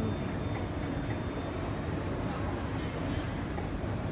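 Shopping-centre ambience: a steady low rumble and hum with indistinct crowd voices.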